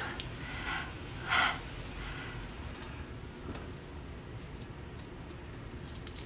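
A Biore charcoal pore strip being slowly peeled off the nose, its adhesive letting go of the skin in faint scattered crackling ticks that grow more frequent toward the end. There are two short breaths near the start.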